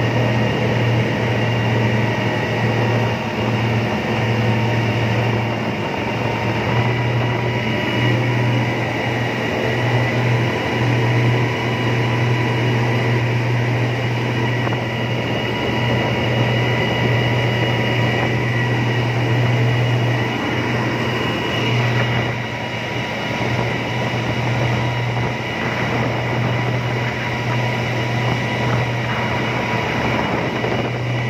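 Outboard motor of a speedboat running steadily at speed, a constant low drone, with the rush of water from the churning wake.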